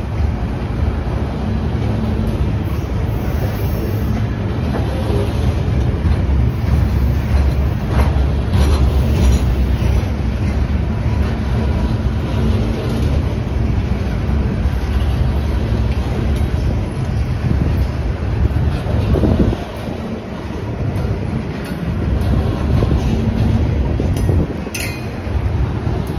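Freight train of Herzog ballast cars rolling past at close range: a loud, steady rumble and clatter of steel wheels on the rails. The noise dips briefly about twenty seconds in.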